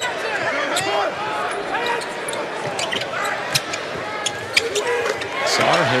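A basketball bouncing on a hardwood court, with sneakers squeaking, over steady arena crowd noise that swells near the end.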